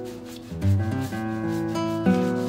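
Acoustic guitar background music, held plucked notes with a new chord coming in about half a second in, over a rubbing sound of a hand-held pad being worked across a plywood sheet.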